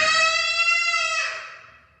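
A small girl's long, high-pitched shriek, held at one pitch for about a second and then fading away.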